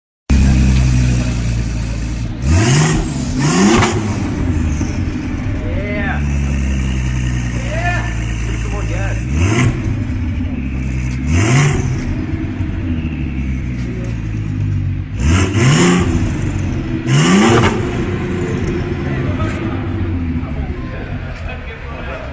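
Volkswagen Golf W12 GTI's 6.0-litre twin-turbo W12 idling, blipped up to a quick high rev and back six times, in three pairs a few seconds apart. It settles to a steady idle near the end.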